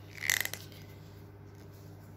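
A short cluster of small plastic clicks and taps, about a quarter second in, as a small tube of brow glue is handled in the fingers. A low, steady room hum follows.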